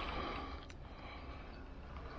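Hooked trout splashing at the lake surface while being played in to the net. The splashing is loudest at first and fades within about half a second, leaving a faint low rumble.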